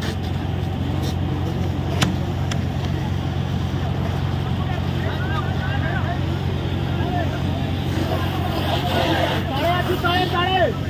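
A vehicle engine running steadily as a low, even drone, with onlookers' voices calling out now and then and a sharp click about two seconds in.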